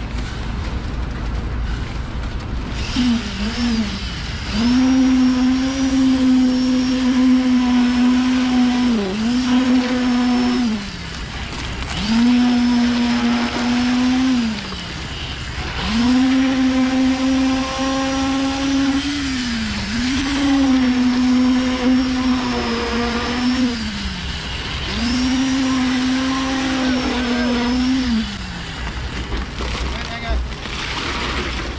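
Concrete poker vibrator on a flexible shaft, humming steadily in repeated runs of a few seconds, the pitch sagging as each run ends. It is being worked into freshly poured wet concrete to compact it.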